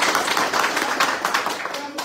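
Applause from a group of men clapping their hands, a dense patter of many claps that thins out and drops off near the end.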